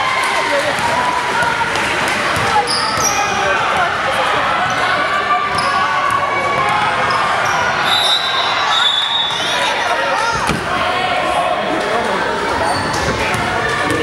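A basketball bouncing on a hardwood gym floor as players dribble and run. Sneakers squeak in short high chirps at several moments, in a large, echoing gym.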